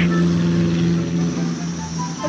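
An engine running steadily at one unchanging pitch.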